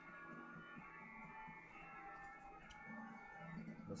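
Faint background music with sustained tones, and a single light click about two-thirds of the way through.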